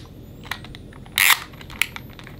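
Budweiser beer-can novelty film camera handled at the eye: a faint high whine climbing in pitch from its flash charging, a short rasping burst just over a second in, and a sharp plastic click near the end.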